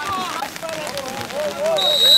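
Men's voices calling out across a football pitch, then a short, shrill whistle blast near the end: the referee's whistle.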